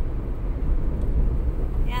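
Steady low road rumble of a car being driven, heard from inside the cabin.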